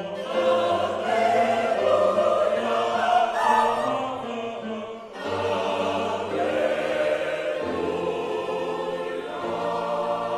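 Large mixed church choir of men's and women's voices singing, with a brief break between phrases about halfway through.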